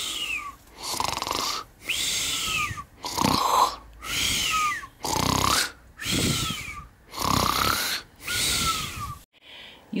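Comic, cartoon-style snoring: about five slow cycles of a rasping in-breath followed by an out-breath with a whistle falling in pitch, stopping shortly before the end.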